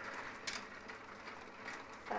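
Faint click of a plastic mahjong tile being set down against the tiles of a hand, sharpest about half a second in, with a few fainter ticks after.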